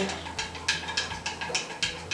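Faint clicks and handling noise from a jar of paint being held and worked at the lid, over a low steady hum.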